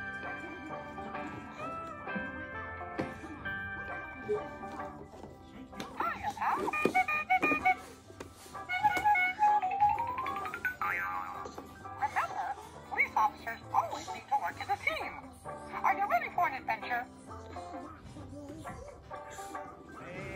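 Electronic melody, then a voice and sound effects, played by a toy ride-on police car's dashboard buttons. About ten seconds in there is a rising glide.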